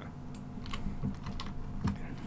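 Faint keyboard typing: a handful of irregular, soft key clicks over a low steady hum.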